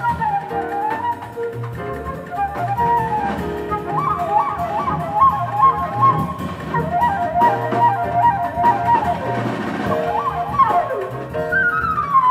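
Live jazz flute solo over upright bass and drum kit. The flute plays fast repeated figures through the middle and starts a run falling in pitch near the end, with the bass holding low notes and light cymbal ticks beneath.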